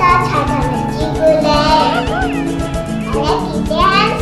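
A young girl speaking in Cantonese over background music.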